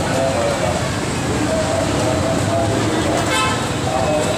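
Busy street noise: a steady wash of traffic with the chatter of passers-by, and a short horn toot a little over three seconds in.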